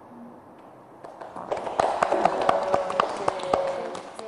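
A small group clapping, starting about a second in.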